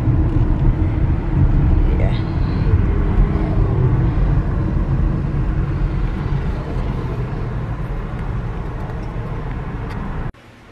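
Road and engine noise inside a moving car's cabin: a steady low rumble that eases off slightly toward the end.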